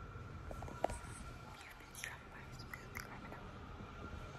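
Faint mouth noises, lip and tongue sounds, with a few small clicks close to the microphone.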